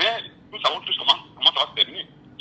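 Speech only: a caller's voice coming through a telephone line.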